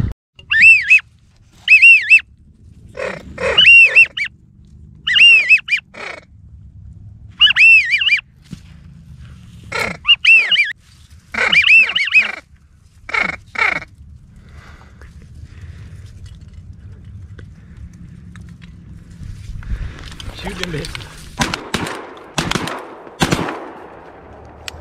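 Hand-blown duck calls in short groups of rising-and-falling whistled notes, wigeon-whistle style, with some lower notes mixed in, used to call in a passing flock. Near the end, rustling and a few sharp clicks as the hunters move in the reeds.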